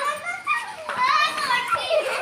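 Children's high-pitched excited voices, shouting and squealing as they play a running game, with one long call about a second in.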